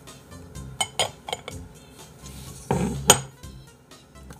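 A handful of sharp clinks and knocks of hard objects, like dishes or a cup being handled, the loudest about three seconds in, over soft background music.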